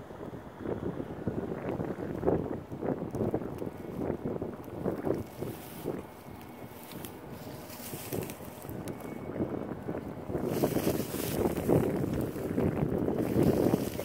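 Wind buffeting the phone's microphone: an uneven, gusting rumble that grows louder in the second half.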